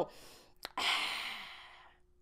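A woman's long, breathy 'ahh' sigh, the satisfied exhale of someone refreshed by a cold drink of water, fading out over about a second. A brief click comes just before it.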